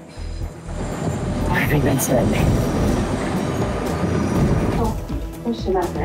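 A commuter train running, a dense rushing noise that swells from about a second in and eases off near the end, under background music.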